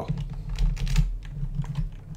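Computer keyboard typing: a quick run of keystrokes.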